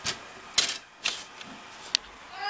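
Plastic CD jewel case being handled: a few separate sharp clicks and clacks, the loudest about half a second in, with a short, sharp snap near the end.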